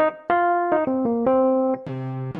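Roland Jupiter-80 synthesizer, played from a Nektar Impact LX88 controller keyboard over MIDI, sounding a short phrase of held notes with a keyboard tone. The notes change about every quarter to half second.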